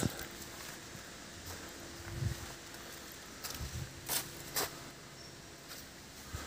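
Quiet footsteps on a dirt path strewn with leaves and twigs, a few soft steps with two sharp clicks a little past halfway.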